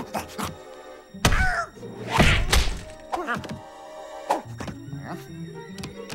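Cartoon soundtrack: background music with two loud thuds, about one and two seconds in, each followed by short gliding squeaks.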